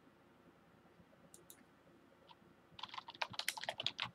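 Typing on a computer keyboard: a few scattered keystrokes, then a quick run of typing starting a little before the end.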